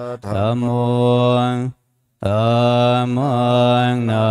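Buddhist monks chanting Pali verses in a steady, near-monotone recitation, breaking off for a short pause about two seconds in.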